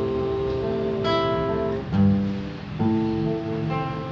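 Acoustic guitar fingerpicked in arpeggios, a bass note followed by a repeating pattern on the treble strings, with the notes ringing on over each other in a slow ballad in A minor.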